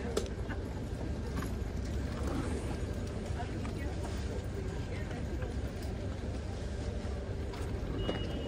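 Coach bus idling with a steady low rumble, under indistinct talking of people.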